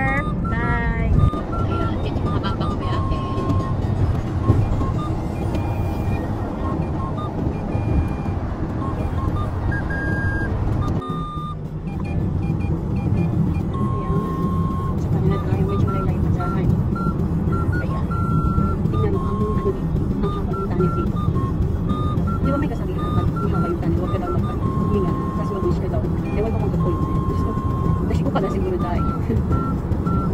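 Steady road and engine rumble inside a moving car, under background music with a simple melody of held notes.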